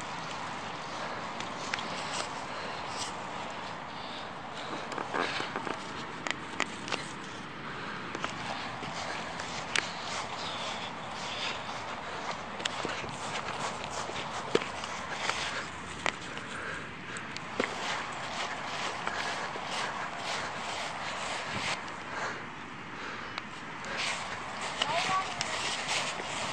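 Steady outdoor hiss with many scattered clicks and knocks from a handheld camera being moved about.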